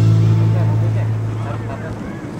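Background music: a held low chord that fades away over about two seconds, with faint voices underneath.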